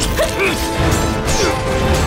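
Dramatic background music over sword-fight sound effects: repeated sharp clashes and hits.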